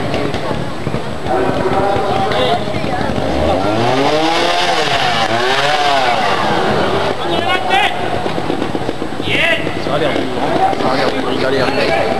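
A trials motorcycle's engine is revved up and back down twice in quick succession as the rider works the bike through a rocky section, under the chatter of a watching crowd.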